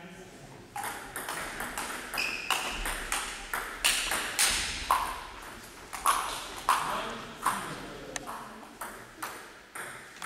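Table tennis rally: the celluloid ball clicking off rubber paddles and the table top in quick irregular strokes, about two to three a second.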